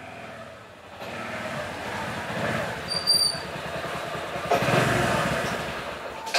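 Motorcycle engine coming closer and pulling up, growing louder until it is loudest near the end, then easing off as it stops. A brief high chirp sounds about three seconds in.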